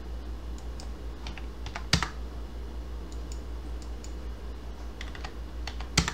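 Scattered computer keyboard keystrokes as numbers are entered into software fields, with one louder click about two seconds in and another near the end, over a steady low hum.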